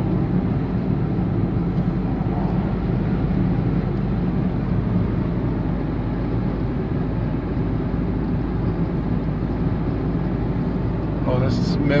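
Steady road and engine noise heard from inside a moving car's cabin, a low, even rumble at constant speed. A man's voice starts briefly near the end.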